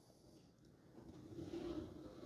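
Samsung Bespoke dishwasher starting its cycle: after about a second of near silence, a faint low hum with one steady tone comes in and holds. It runs very quietly.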